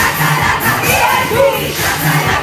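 A group of fans chanting and shouting together in unison over pop music.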